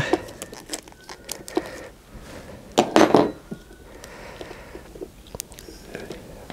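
Metal clinks and scrapes of a spanner being worked on a battery terminal bolt, with a louder rattle about three seconds in.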